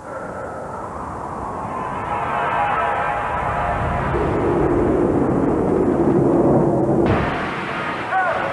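Commercial sound design: a rushing whoosh that swells steadily for about seven seconds, like the wind of a fall, with sustained music tones beneath it. About seven seconds in it changes abruptly to a brighter, hissier noise.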